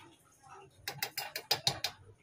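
A steel spoon clicking and scraping against an aluminium cooking pot while cooked khichuri is stirred: a quick run of about ten sharp clicks in the second half.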